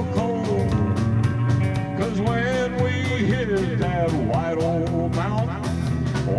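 Live country band music: a hollow-body electric guitar strummed to a steady beat, with a melody line bending in pitch over it.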